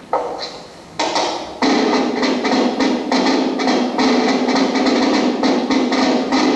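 Music from an old black-and-white film's soundtrack, played back from a screen in a room. It starts suddenly, swells about a second in and again shortly after, then carries on with a brisk, even percussive beat of about three strokes a second.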